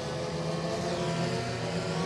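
Engines of several front-wheel-drive dirt-track race cars running hard together, a steady mix of engine notes at high revs.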